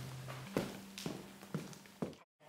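Faint footsteps on a wooden floor, three steps about half a second apart, over a low steady tone that drops away.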